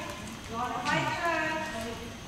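A horse's hoofbeats on the soft footing of an indoor arena, with a voice calling out over them from about half a second in.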